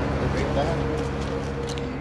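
Indistinct voices of people over a steady low engine drone, the whole sound fading away.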